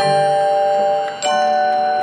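Marching band front ensemble playing ringing chords on mallet percussion, struck twice: once at the start and again about a second later, each left to ring.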